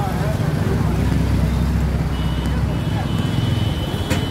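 Steady low motor rumble, with a thin high whine joining a little past halfway.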